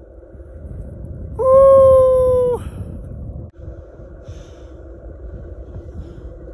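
A man's high, held whoop of excitement lasting just over a second, its pitch falling slightly at the end, over steady wind noise on the microphone.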